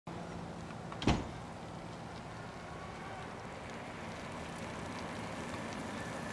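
Steady low street hum with one loud thump about a second in.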